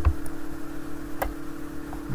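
Computer mouse button clicks: a faint click near the start and a sharper single click a little over a second in, over a steady low electrical hum.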